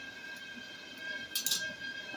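Ball of dough frying in hot oil in a pan, giving a faint, even sizzle. A short clink about one and a half seconds in.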